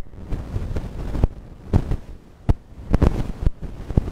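A run of irregular knocks and thumps, about five in four seconds, over a low rumble.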